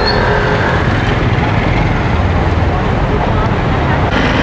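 Steady road traffic noise from vehicles passing on a busy city street.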